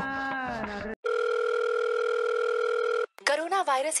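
A steady electronic telephone tone in the earpiece after a number is dialled, holding one even pitch for about two seconds and then cutting off abruptly as the call connects to a recorded voice announcement.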